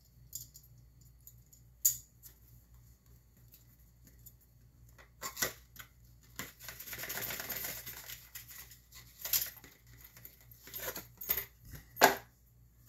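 Hands opening a small cardboard knife box: a sharp click about two seconds in, then a rustling slide of about two seconds as a zip case is drawn out of the box. Scattered clicks and light knocks follow as the case and packing are set on a wooden table.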